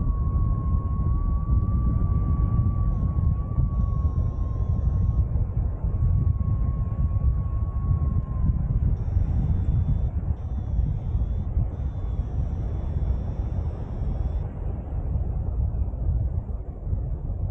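Airflow rushing over the microphone of a paraglider in flight, a steady low rumble. A thin, slightly wavering high tone runs along with it and stops a little past halfway, and faint higher tones come in during the second half.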